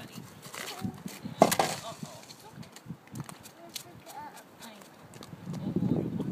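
A small snow shovel knocking and scraping on an asphalt driveway, with one loud clatter about a second and a half in, among footsteps in slush.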